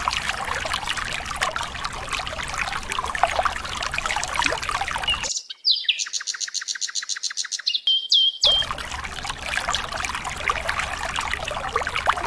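Water pouring from above and splashing onto plastic toy trucks standing in a puddle. About five seconds in, the water sound cuts out for some three seconds, and a clean, high-pitched rapid chirping trill plays in its place, ending in a few single rising chirps.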